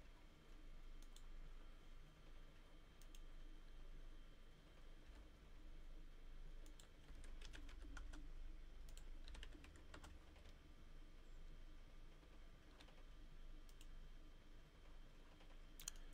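Faint computer keyboard keystrokes and clicks, coming a few at a time with pauses between, against near silence.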